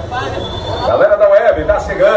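A man's voice calling out over a sound truck's loudspeakers, the words not clear, with crowd noise and a low rumble beneath. It grows louder about a second in.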